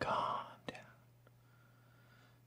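A man whispering softly under his breath for about half a second, followed by a faint click.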